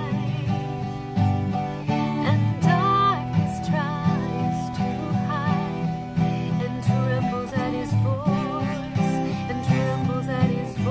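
Acoustic guitar strummed in a steady rhythm, accompanying a woman singing a slow worship song with vibrato on the held notes.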